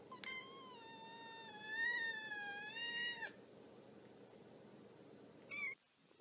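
A kitten meowing: one long, drawn-out meow lasting about three seconds, then a short, higher meow near the end.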